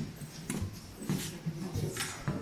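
Footsteps on a wooden boardwalk, about one step every half second or so, under indistinct murmuring voices of a tour group.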